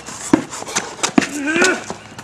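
A basketball being dribbled, with sharp bounces about every third of a second during a one-on-one game, and a short vocal grunt or call about a second and a half in.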